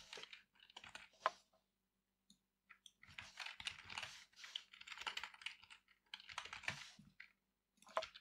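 Typing on a computer keyboard: quick runs of keystrokes that pause for about a second and a half near the start, then resume in longer, denser runs.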